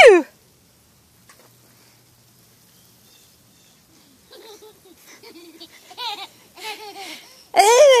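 A toddler's voice: a high squeal falling in pitch right at the start, a few seconds of quiet, then short babbling sounds and, near the end, a loud delighted shriek of laughter.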